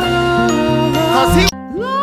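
Musical-theatre cast recording: a singer gliding through sung "la" syllables over band accompaniment. About one and a half seconds in, the audio cuts abruptly to a different song, where a voice slides up into a held "la" over new accompaniment.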